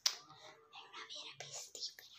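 A person whispering close to the microphone, opening with a sharp click.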